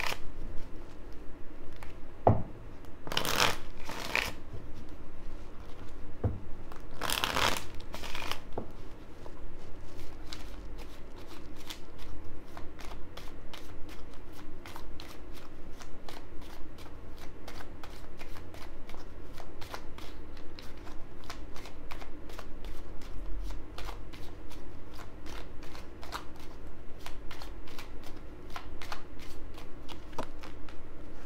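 A deck of oracle cards being shuffled by hand: a few louder sliding swishes in the first eight seconds, then a long steady run of quick card clicks as the cards are worked through.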